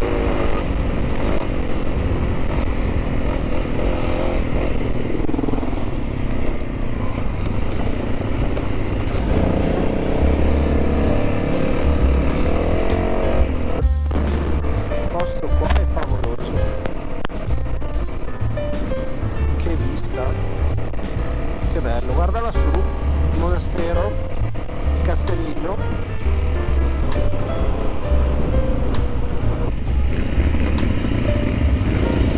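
Background music laid over a motorcycle engine running as the bike rides, with a short break in the sound about 14 seconds in.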